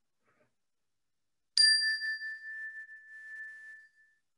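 A single struck bell tone rings out about one and a half seconds in and fades over the next two and a half seconds, its higher overtones dying away first. It is the signal that ends a moment of silent prayer.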